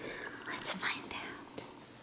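Soft whispering, faint and breathy, with no clear voiced words.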